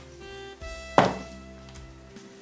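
Background music with steady held notes, and about a second in a single loud thunk as a black bag is dropped onto a surface.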